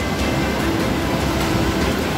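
Steady rushing of a mudflow: fast, muddy floodwater pouring across and alongside a road.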